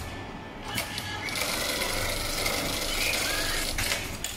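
HighTex MLK500-2516N automatic pattern sewing machine stitching through heavy polyester webbing, a fast steady run of needle strokes that starts a little over a second in, after a single click, and stops just before the end. The machine is sewing a box-and-cross reinforcement pattern where the cargo-net straps cross.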